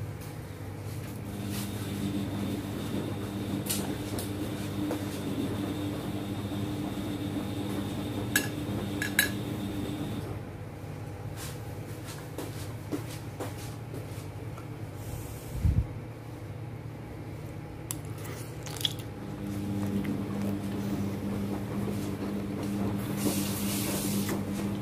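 Metal spoon and fork clinking now and then against plates and a small sauce bowl while eating, a few sharp clinks spread out, over a steady low hum.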